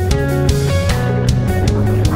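Guitar-led rock music with a steady beat.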